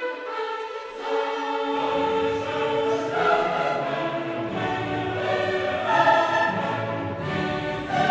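Classical choir singing with orchestra, sustained chords that grow fuller as low instruments come in about two seconds in.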